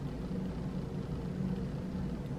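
Steady low background hum with a faint droning tone and no distinct events: room tone.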